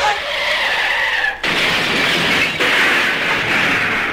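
A loud hissing, noise-like sound effect played through the DJ mix between funk tracks. It comes in two stretches with a brief break about a second and a half in, and a faint falling tone runs through the first stretch.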